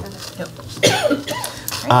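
A person coughs once, about a second in, among brief low speech.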